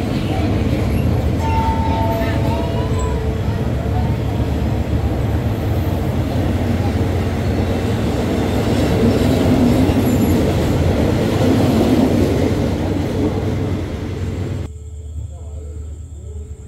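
Passenger coaches of a Thai train rolling slowly along a station platform, a steady rumble of wheels on the rails with a few brief high tones in the first seconds. Near the end the rumble cuts off suddenly to a much quieter background.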